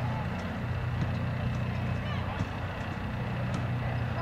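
A steady low mechanical hum, like an engine or generator running, with faint distant voices of players calling across the field.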